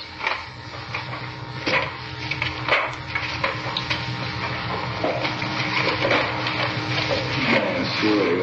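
Paper rustling and being handled close to the microphone, irregular crackles and rustles over a steady low hum.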